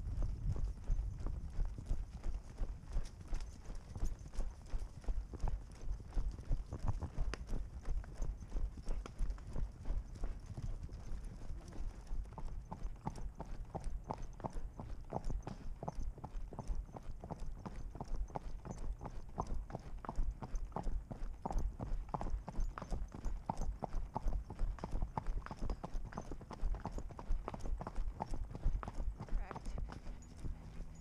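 Hoofbeats of a ridden horse on a sandy dirt trail, in a quick, steady rhythm.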